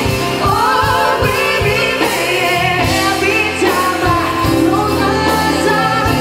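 A pop song performed live: a male lead singer with vibrato over bass and drums, with female backing vocals.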